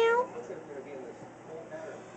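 A black-and-white domestic cat meowing: the end of one call that rises slightly in pitch and stops about a quarter second in.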